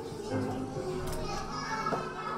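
Young children's voices chattering and calling out in a hall, with faint music underneath.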